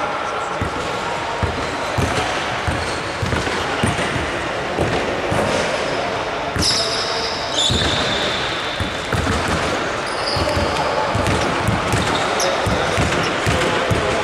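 Basketball being dribbled on a hardwood court in a large hall: repeated thuds of the ball and players' footsteps over a steady background of voices. A brief high shrill sound comes about seven seconds in.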